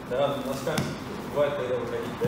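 Short voiced sounds from people on the mat, with one sharp thump about three quarters of a second in, from grappling on the training mats.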